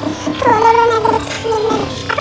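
Sped-up, chipmunk-style high-pitched singing voice in a song, holding a long, slightly wavering note that comes in about half a second in.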